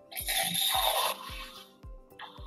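Water running briefly into a glass beaker, a hissing rush for about a second and a half, over background music with a steady beat.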